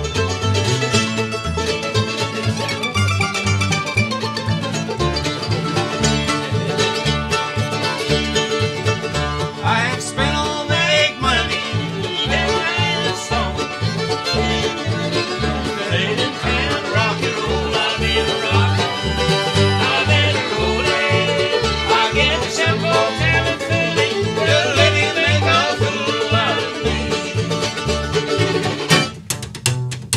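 Acoustic bluegrass band playing an instrumental passage: banjo, mandolins, fiddle, acoustic guitar and upright bass, over a steady bass beat.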